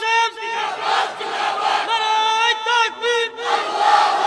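Men's voices chanting or calling out together, loud and pitched high, carried over a public-address system. The held calls are broken by two short gaps.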